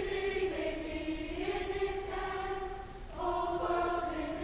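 A large school choir singing long held notes in chords, moving up to a higher chord about three seconds in.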